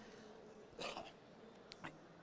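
Near silence: room tone, with one faint short noise about a second in and two faint clicks near the end.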